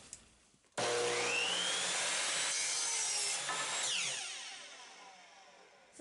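Electric miter saw switching on, its motor spinning up with a rising whine as it cuts through a wooden board, then winding down with falling pitch and fading out after the trigger is released.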